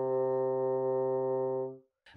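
Bassoon playing a single sustained low C (about 130 Hz), held steady with a rich reedy tone, then tapering off near the end.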